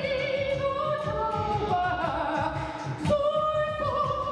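Opera singing: a voice holds long notes that step up and down in pitch, over instrumental accompaniment with a steady low pulse.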